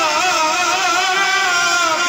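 Qawwali music: a male voice holds one long, wavering, ornamented sung note over steady harmonium notes.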